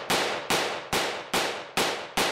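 AR-15 firing 5.56 rounds in steady semi-automatic fire: five shots a little under half a second apart, each trailing off quickly.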